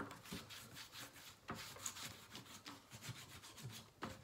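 Faint scratching and rubbing of a whiteboard marker on a whiteboard, in many short strokes as someone colours in.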